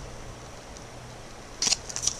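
Quiet room tone, then a brief dry rustle near the end as trading cards are handled.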